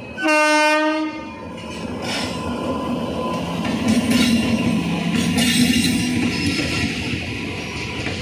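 An electric locomotive's horn sounds one blast of about a second just after the start. Then the express train runs close past, a steady rumble of locomotive and coaches with wheels clattering over the rail joints, growing louder as it draws level.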